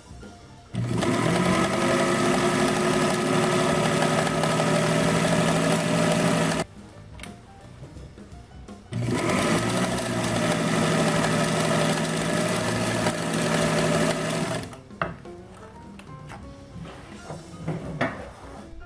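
Elna Supermatic sewing machine running at sewing speed in two long steady runs of about six seconds each, a quiet pause between them, its motor hum over the rapid chatter of the needle stitching. Background music plays throughout.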